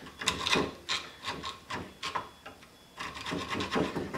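Small round file rasping on mild steel, quick short strokes at about four or five a second, with a short pause in the middle, as it opens up the curved slot of a steam engine's expansion link.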